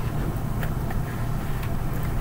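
Steady low rumble of room and microphone noise, with a few faint short clicks.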